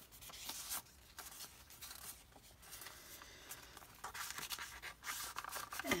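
Paper and card rustling and scraping as tags are slid out of a journal pocket, handled and tucked back in: soft, scattered sounds that get busier and louder in the last two seconds.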